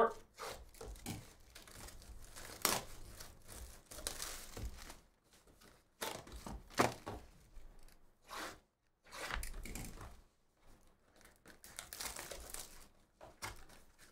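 Plastic shrink wrap being torn off a sealed trading card hobby box and crinkled by hand, in short irregular bursts of ripping and rustling.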